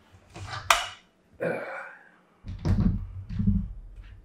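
A bolt-action rifle on a bipod being lifted and turned end for end on a wooden table: a scrape ending in a sharp click less than a second in, then rustling, then low bumps and rubbing as it is set back down.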